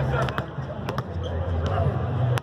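Basketballs bouncing on a hardwood court: a handful of sharp, irregular bounces, with people talking in the background.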